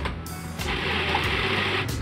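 Food processor motor running, a steady whir that starts just after the beginning and cuts off shortly before the end, as it works dark chocolate into a clay-like paste. Background music plays underneath.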